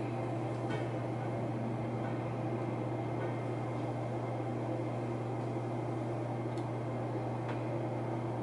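Steady low background hum with a faint hiss, and no distinct event apart from a couple of very faint soft clicks.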